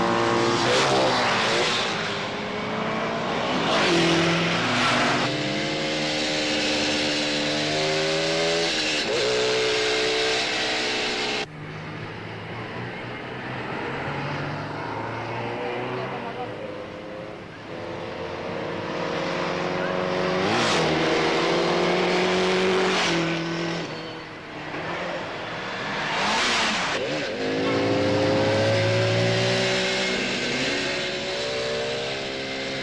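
Motorcycle and car engines racing past at high speed, pitch climbing through the gears and falling away as they pass, with several whooshing fly-bys. The sound drops abruptly about eleven seconds in, then builds again.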